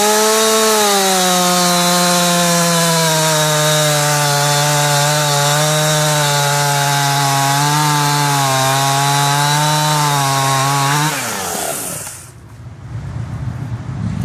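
Husqvarna two-stroke chainsaw with a 20-inch bar cutting through a log at full throttle: the engine pitch dips as the chain bites into the wood and holds steady under load for about eleven seconds. Near the end the throttle is released and the pitch falls away to idle.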